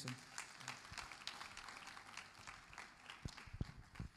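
Audience applauding at the end of a speech: faint, scattered hand claps.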